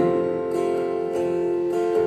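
Acoustic guitar played live, a strummed chord ringing on with a few light strums.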